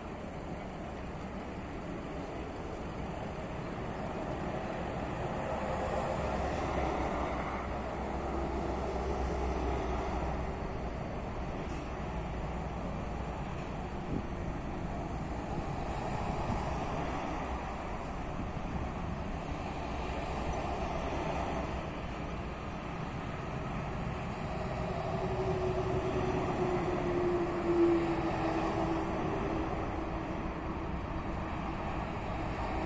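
Motorway traffic going past, its noise swelling and fading in waves as vehicles pass, over a low engine hum. A held whine comes in over the last few seconds, with a single sharp knock near the end.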